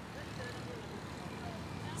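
Faint, steady road-traffic sound from a busy street of motorbikes and cars.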